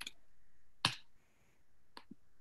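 A few sharp clicks from operating a computer, the loudest just under a second in, as a link is sent in a video-call chat, over faint room tone.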